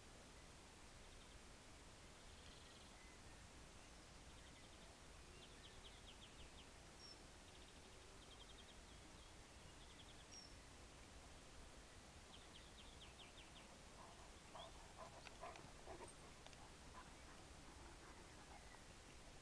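Near silence: quiet outdoor ambience with faint, distant bird song in short rapid trills. A few faint rustles and knocks come about three-quarters of the way in.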